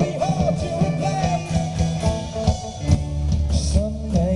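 Live rock band playing through the PA: electric guitars, bass and drums, with a steady drum beat. A melody line bends in pitch over the first second and a half, and the bass settles on a held low note about three seconds in.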